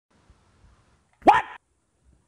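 A dog gives a single short bark, a little past a second in.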